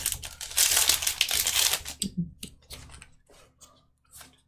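Foil booster-pack wrapper crinkling and tearing as it is opened, for about two seconds. Then a few light clicks as the stack of trading cards is handled.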